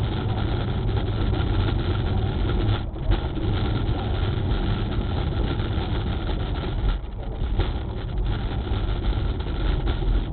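Steady engine and tyre noise of a car driving on a rain-wet freeway, heard from inside the cabin through a dashcam microphone.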